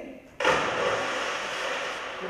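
Loud rustling and crinkling of a crumpled paper stage set, starting suddenly about half a second in and slowly fading.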